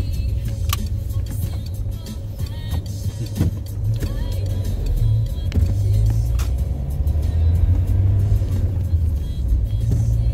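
Car engine and road rumble heard from inside the cabin as the car drives slowly down a street, growing louder about halfway through as it picks up speed.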